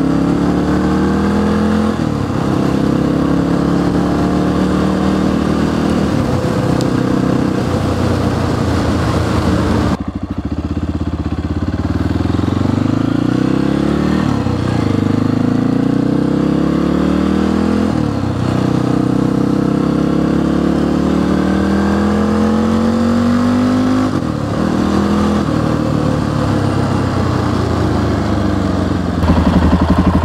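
1994 Honda XR650L's air-cooled single-cylinder four-stroke engine under way, climbing in pitch as it pulls through the gears and dropping back at each shift, several times over.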